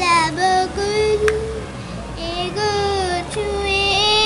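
A child's singing voice holding long, drawn-out notes, with one sharp click about a second in.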